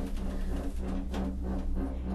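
Gondola cabin riding along its haul cable: a steady low hum with a few faint clicks.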